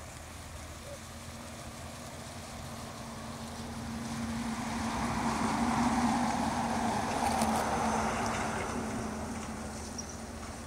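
A motor vehicle driving past: engine and tyre noise slowly swell to a peak about six seconds in, then fade away, over light wind.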